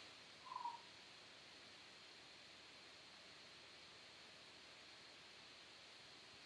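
Near silence: room tone, with one brief faint high blip about half a second in.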